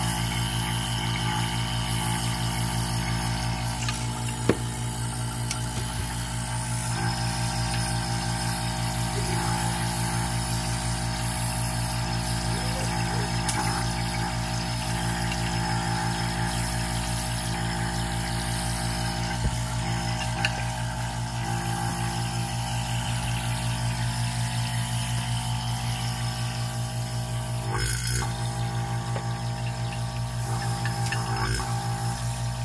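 Rotary vane vacuum pump running with a steady hum, with a few faint clicks along the way and a brief knock near the end.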